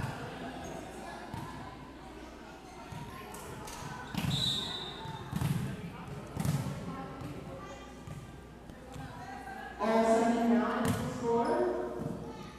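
A volleyball bounced on a wooden gym floor before a serve, a few low thuds about a second apart. A short high whistle-like tone sounds near the first bounce, and voices rise near the end.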